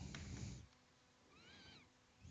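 Near silence, with a faint low rumble in the first half second and one short, faint pitched cry about one and a half seconds in that rises and then falls in pitch.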